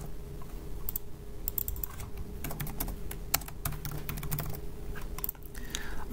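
Typing on a computer keyboard: irregular runs of keystroke clicks with short pauses between them.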